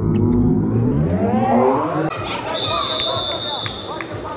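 A drawn-out voice sliding in pitch from the edit's soundtrack, cut off about two seconds in. Then arena sound: wrestling shoes squeaking on the mat, with a steady high whistle through the last second and a half.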